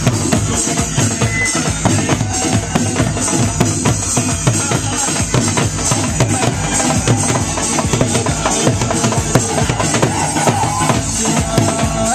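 Loud, continuous dance music driven by a dhol, a two-headed barrel drum, beating a fast, steady rhythm.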